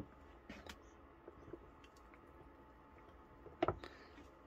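Faint popping and ticking from an egg frying in a little oil inside a closed electric omelette maker, over quiet room tone. A sharper double click comes near the end.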